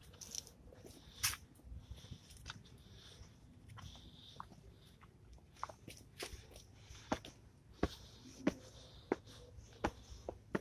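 Footsteps on a gritty stone path and stone steps, short crunching scuffs that settle into a steady walking pace of about three steps every two seconds in the second half.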